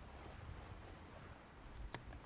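Faint outdoor ambience: a low wind rumble on the microphone, with a single click near the end.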